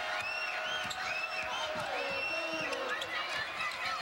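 Basketball sneakers squeaking repeatedly on a hardwood court in short high squeals, with a ball being dribbled and an arena crowd murmuring underneath.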